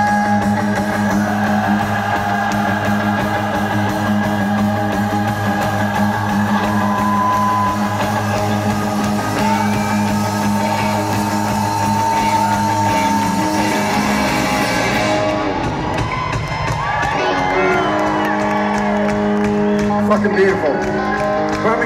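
Live rock band playing, heard from within the crowd: electric guitar holds long sustained notes over a steady low drone. About three-quarters of the way through the band thins out, leaving wavering guitar lines on their own.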